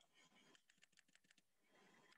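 Very faint typing on a computer keyboard: a quick run of keystrokes from about half a second to a second and a half in.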